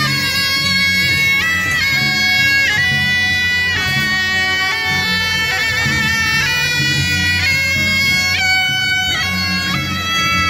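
Several suonas, the Taiwanese double-reed horns of a 鼓吹 band, play a loud festival melody together, the notes stepping up and down.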